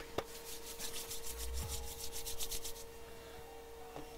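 A rapid rhythmic scratching or rasping, about eight strokes a second, lasting some two and a half seconds after a short click, over a steady faint hum.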